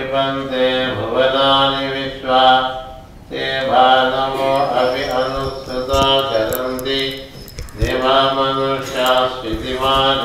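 A man chanting a Sanskrit sloka in a slow, melodic recitation. He holds long notes in phrases of a couple of seconds, with short breaks for breath, the longest a little after three seconds in and again near eight seconds.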